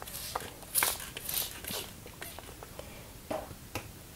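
Spray bottle of water misting a sheet of watercolour paper: several quick hissing spritzes in the first two seconds, then a few light clicks near the end.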